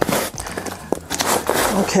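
Rustling and scraping of loose, moist potting soil being brushed together by hand on the work surface, with a single sharp click about a second in.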